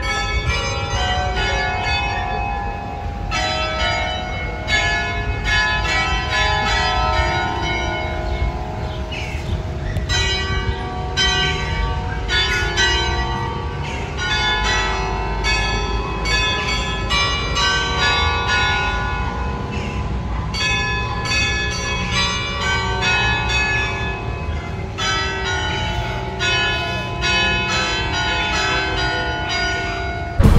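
Bitola Clock Tower's bells chiming a melody: many struck, ringing notes in phrases separated by short pauses.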